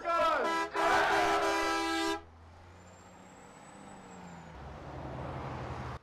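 A vehicle horn sounds with a chord of several steady tones for about a second and a half, then cuts off sharply about two seconds in. It is followed by the low steady hum of a coach bus engine that slowly grows louder.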